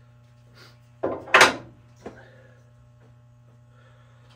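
A dial indicator's metal magnetic base set down on the saw table with a single sharp clunk, followed by a lighter click about a second later, over a faint steady hum.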